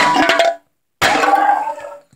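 A drink container knocked over and clattering on a tabletop: two loud bursts of impacts about a second apart, each ringing and dying away.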